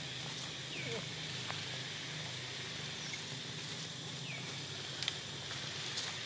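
Outdoor ambience in trees: a steady high-pitched drone with a low hum beneath it, a few short falling chirps and a couple of sharp clicks, the loudest about five seconds in.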